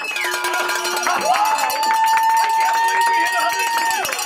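A small group clapping and cheering. About a second in, one voice rises into a long, steady, high whoop that runs over the clapping.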